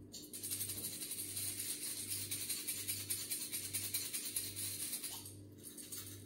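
Gaggia espresso machine's vibratory pump buzzing as it pushes water through the portafilter. The buzz starts just after the button press and cuts off about five seconds in.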